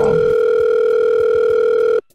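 A steady telephone tone as a call is placed: one loud, unbroken electronic tone that cuts off suddenly at the end.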